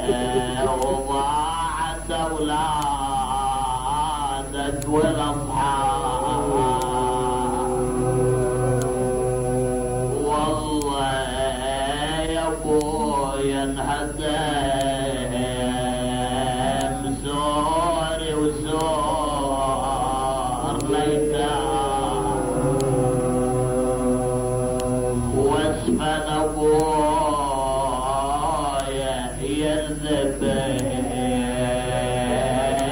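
A man's voice chanting an Arabic religious elegy in long, melodic, drawn-out phrases with short pauses for breath, over a steady low hum from an old recording.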